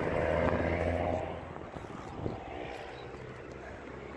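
A steady engine drone that fades away after about a second and a half. Then low outdoor background with a single faint click.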